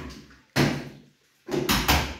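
Aluminium kitchen cabinet doors being swung and knocked shut. There is a sharp knock about half a second in and two more close together near the end.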